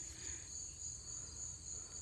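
Steady high-pitched insect chorus, a continuous trill that does not let up.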